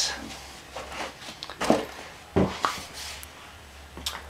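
Handling noise from packing a folding bicycle: a few separate light knocks and clicks as parts are moved, the loudest a little past the middle.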